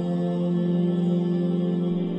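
Background music: one steady, sustained droning tone with its overtones, held without change.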